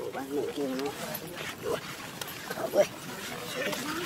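Macaque calls: wavering cries in the first second, then several short sharp calls, the loudest about three seconds in.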